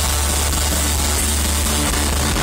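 Live rock band playing loud, with a held low bass note droning steadily under guitar and keyboard, recorded distorted from the audience.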